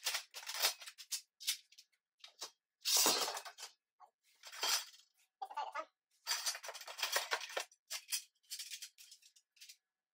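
Steel shelving parts being handled: a string of irregular clinks, scrapes and rustles as long metal pieces are lifted from the box and set aside, with two longer scraping, rustling stretches about three and seven seconds in.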